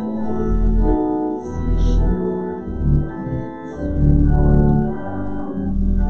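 Organ playing a slow hymn tune in sustained chords that change every second or so.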